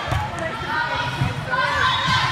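Overlapping voices of players and spectators calling out in a large sports hall, with a few dull thuds from the volleyball game on the court.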